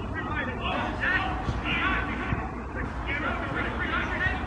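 Indistinct shouts and chatter of players and spectators at an outdoor football match, over a steady low rumble.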